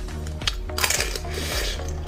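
Eating crunch of a hard, glassy sugar-candy shell on candied vegetables: sharp crackling clicks, with a dense burst of crunching about a second in. Background music plays underneath.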